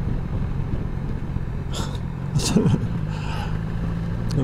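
BMW S1000XR motorcycle's inline-four engine running steadily at an even pitch as the bike rolls along, with a couple of short brief sounds near the middle.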